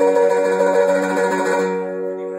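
Mandolin sounding one sustained chord that holds steady and begins to fade near the end.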